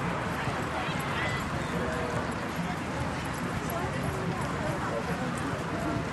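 Many runners' footfalls thudding on grass, mixed with the steady chatter of a crowd of spectators.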